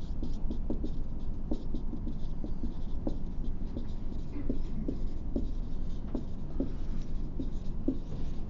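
Someone writing by hand: a run of short, irregular scratching strokes and taps.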